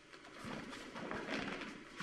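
Soft footfalls and shuffling of bare feet on foam puzzle mats, with the rustle of cotton training uniforms and a few dull knocks, as a two-hand-grab aikido throw (ryote dori kokyunage) is carried out and the partner goes down to the mat.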